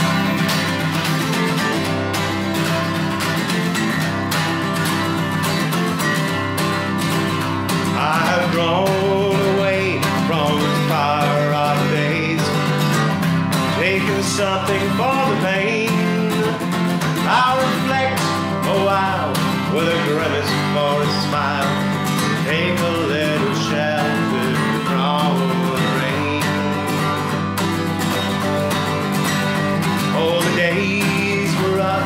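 Steel-string acoustic guitar strummed in a steady rhythm as a song opens, with a man's singing voice coming in about eight seconds in and carrying on over the strumming.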